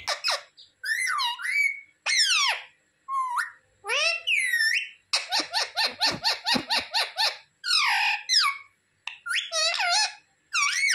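Rose-ringed (ringneck) parakeet calling and chattering: a string of sharp, high-pitched calls that glide up and down, some of them speech-like, with a fast run of about ten short repeated notes in the middle.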